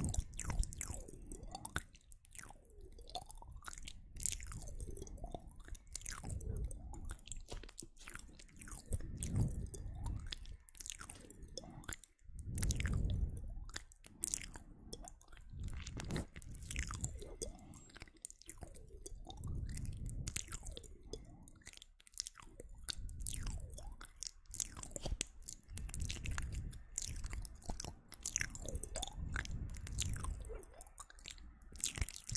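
Close-miked ASMR mouth sounds: wet clicks, pops and smacks of lips and tongue, repeated in slow swells every two to three seconds.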